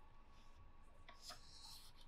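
Near silence, with faint rubbing and scratching from hands holding a paper picture book open.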